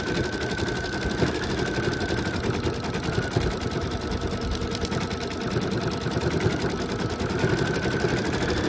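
Brother Essence embroidery machine stitching out a monogram, its needle running in a fast, even rhythm of stitches with a faint steady whine.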